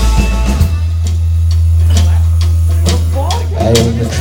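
A live indie rock band playing. About half a second in, the full band sound drops away, leaving a held low note under scattered drum and cymbal hits. A voice comes in near the end.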